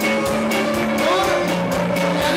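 A live band playing: accordion holding sustained chords over a drum kit keeping a steady beat, with electric guitar.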